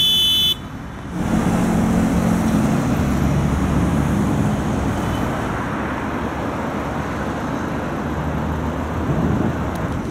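Steady traffic noise from cars driving along a busy multi-lane city avenue, a continuous rumble and tyre noise that swells about a second in and holds. At the very start a brief, loud, high-pitched tone lasts about half a second.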